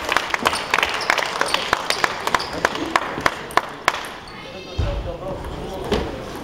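Table tennis ball being bounced, a string of light, evenly spaced clicks about three a second that stops about four seconds in, over spectators' chatter.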